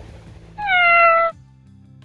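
A single loud cat meow, about two-thirds of a second long and sliding slightly down in pitch, over quiet background music.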